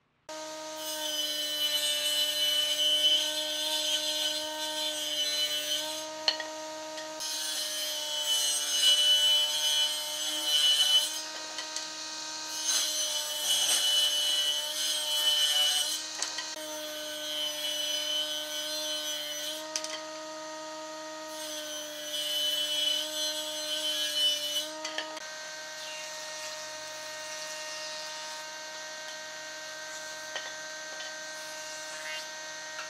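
A combination woodworking machine with a table saw and jointer-planer runs with a steady motor whine while wood strips are fed through it in about five passes of three to five seconds each, each pass adding a loud hiss of cutting. For the last few seconds the machine runs on its own with no cutting.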